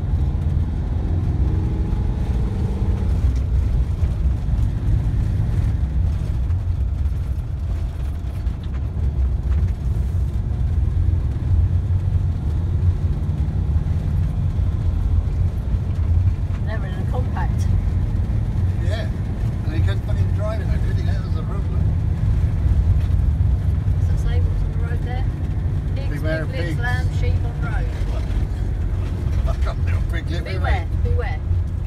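A car's engine and tyres make a steady low rumble, heard from inside the cabin while driving.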